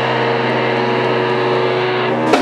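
Live rock band holding one long chord, steady and unbroken, with no drum strokes under it.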